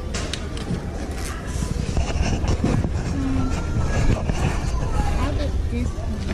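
Clicks and rattles of a plastic child's bike helmet being handled and pulled from a store display hook, over a steady low rumble, with brief faint voices.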